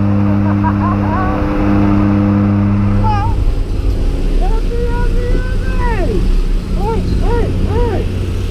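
Jump plane's engine and propeller drone in the cabin, giving way after about three seconds to loud rushing wind at the open door. Skydivers whoop and shout over it, with three short shouts near the end.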